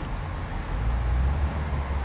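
A low, steady mechanical drone over outdoor background noise, growing a little louder about half a second in.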